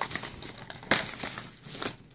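Padded paper mailer crinkling and rustling as it is handled and a DVD case is slid out of it, with a sharper crackle about a second in.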